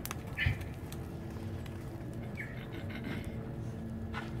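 Outdoor background noise with a steady low hum, a soft thump about half a second in, and two short high chirps, the first with the thump and the second past the middle.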